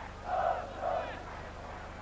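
Football stadium crowd chanting in unison: two swells of massed voices about half a second apart, over a low steady hum.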